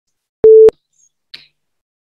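Short electronic beep from the PTE test software, one steady mid-pitched tone about a quarter second long with a click at each end, signalling that the microphone has started recording the answer.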